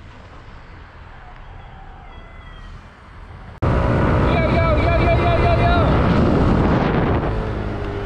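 Faint steady background noise, then, about three and a half seconds in, loud wind buffeting the microphone of a moving scooter. Over it a man's voice wavers up and down in a sing-song pitch for a second or so.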